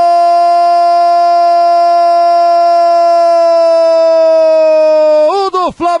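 Brazilian football commentator's long held goal cry, a single "gooool" sustained at one high, steady pitch. Near the end it wavers and breaks off into the next shouted word.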